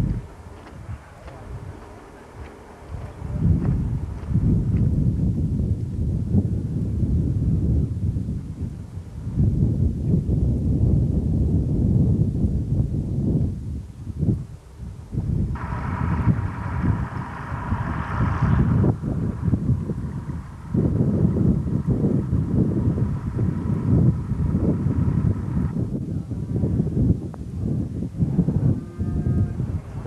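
Wind buffeting the camcorder microphone: a loud low rumble that rises and falls in gusts. About halfway through, a steady pitched sound with overtones joins it for a few seconds, then fades.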